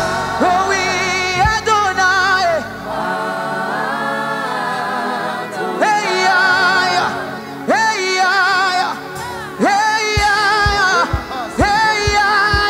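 Gospel worship singing: the voice swoops up into long held notes with a wide vibrato over instrumental accompaniment, and a low drum beat comes in about ten seconds in.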